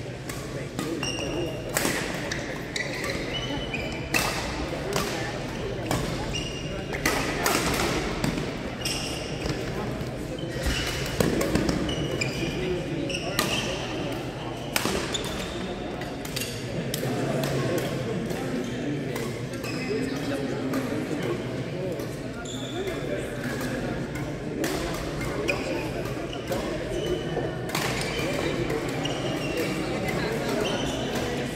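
Badminton rackets hitting a shuttlecock in doubles rallies: a string of sharp smacks at an irregular pace, echoing in a large gym. Short high squeaks from court shoes on the floor come between the hits, over a background murmur of voices.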